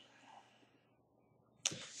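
Near silence: room tone. Near the end comes a short, sharp intake of breath just before a man starts speaking again.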